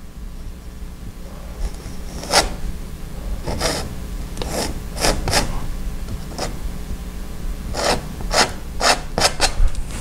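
Painting knife scraping oil paint across canvas in a series of short, separate strokes, about ten of them, starting about two seconds in. A steady low hum runs underneath.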